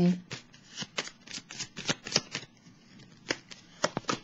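A tarot deck being shuffled by hand: a quick run of card flicks, about six a second, that thins out after two seconds into a few single snaps as a card is drawn.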